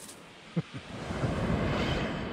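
A low rumble on the camera microphone, building up from about a second in, after a single click near the middle.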